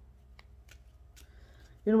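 A tarot deck being handled in the hands: a couple of faint card clicks, then a soft brushing of cards sliding against each other.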